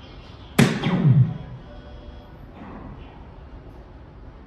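A dart striking the dartboard once, a sharp hit about half a second in followed by a short low tail, over faint background music.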